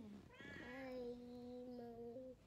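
Domestic cat meowing: a short call as it opens, then from about half a second in a long drawn-out meow that falls at first and then holds a steady pitch.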